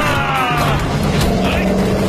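Action-film fight soundtrack: music mixed with falling shouts at the start, over a dense bed of battle effects.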